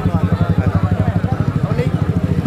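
An engine idling with an even low pulse, about a dozen beats a second, with faint voices over it.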